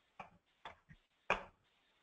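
Four faint, irregular clicks of a computer mouse or keys, the loudest about a second and a quarter in.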